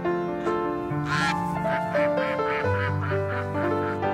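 Gentle piano music, with a bird calling in a quick run of about ten short notes, about four a second, the first one the loudest, starting about a second in and running to near the end.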